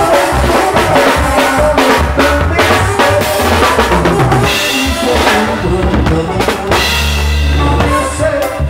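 Live band playing without vocals, the drum kit loudest: bass drum, snare and cymbal strokes over keyboard and horn lines.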